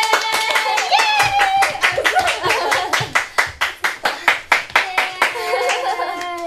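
Two people clapping their hands quickly, about four claps a second, with excited laughing voices over the claps. The clapping stops shortly before the end.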